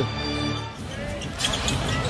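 Basketball game court sound: music with steady held notes in the first second, then a basketball bouncing on the hardwood floor in sharp knocks during the second half.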